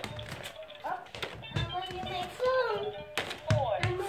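VTech Smart Shots Sports Center toy playing its electronic tune and voice through its small speaker, set off by a scored ball, with a few light knocks of plastic balls.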